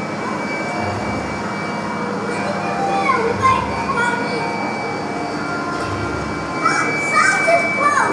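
Indistinct children's voices over a steady background hiss, with a few short rising calls near the end.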